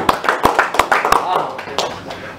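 A small group of people applauding, with quick irregular claps and voices talking over them.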